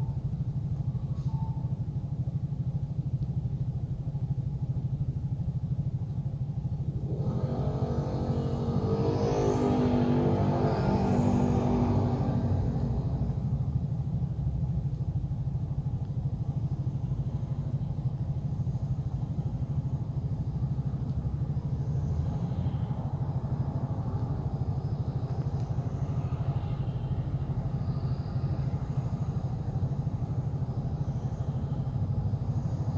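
Traffic at a busy city intersection: a steady low rumble of engines running and passing. From about seven seconds in, one vehicle accelerates away, its engine pitch climbing in steps, louder than the rest for several seconds before fading back into the traffic.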